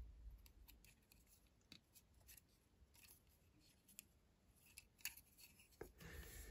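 Near silence, broken by a few faint, scattered clicks of hands handling a small plastic Lego model.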